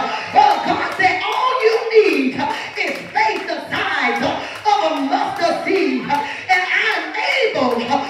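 A woman preaching loudly through a microphone and PA, her voice rising and falling in long pitched phrases. Sharp percussive hits sound about twice a second beneath her.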